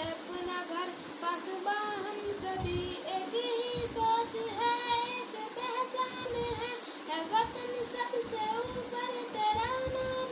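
A boy singing a Pakistani national song, his voice rising and falling, with long held notes in the second half.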